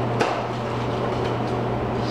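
One sharp knock of a split firewood stick set into a wooden bundling jig, about a quarter second in, over a steady low hum.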